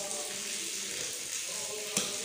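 A steady hiss, with faint voices in the background.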